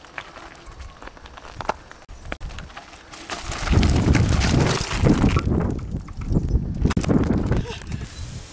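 Mountain bike coming down a rocky trail right past the microphone: tyres crunching over loose stones and the bike rattling. Faint scattered clicks at first, then loud from about three and a half seconds in, with a short lull before a second loud stretch.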